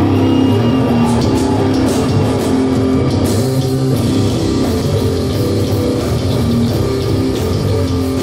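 Live stoner rock band playing loud: a heavy distorted electric guitar riff over bass guitar and a drum kit, with cymbals crashing on top.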